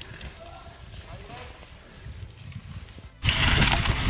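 Low rumbling with a faint voice, then about three seconds in a sudden switch to loud, steady wind and tyre noise from a mountain bike rolling down a leaf-covered dirt trail.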